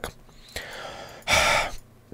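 A man sighing close to a headset microphone: a soft breath in, then a louder breath out lasting about half a second, as he gathers his answer.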